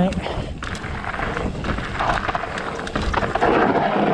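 Ibis Ripley 29er mountain bike rolling fast down a loose gravel trail: tyres crunching over gravel with frequent small knocks and rattles from the bike, and wind on the microphone. It gets louder near the end as the rear tyre slides with no grip on the loose surface.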